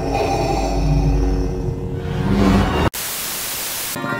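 Dark trailer music with held tones over a deep rumble, then about three seconds in an abrupt cut to about a second of steady hissing white-noise static, used as a transition effect.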